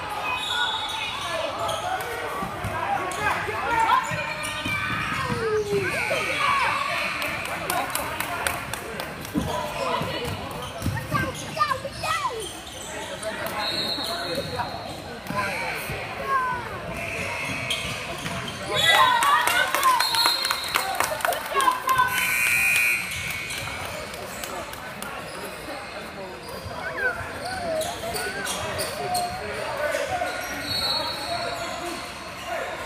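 A youth basketball game in a gym: the ball bounces on the hardwood court among players' and spectators' shouts, echoing in the large hall, with a louder burst of noise about two-thirds of the way through.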